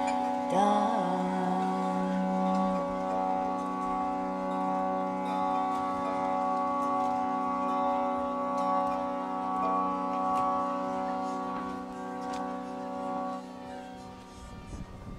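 Hand-pumped harmonium holding a steady reed drone chord, with a woman's voice gliding into and holding a final low note that ends about three seconds in. The drone then carries on alone and fades out near the end as the song closes.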